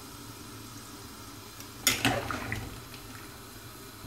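A stainless steel lid set onto a steel cooking pot about two seconds in: one sudden metallic knock that rings briefly and fades within about a second, over a low steady hum.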